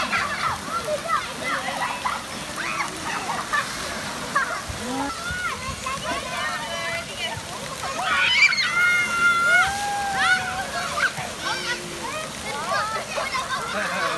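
Children shouting and calling over a steady spray and splash of water in a water playground, with one long high-pitched call about eight seconds in.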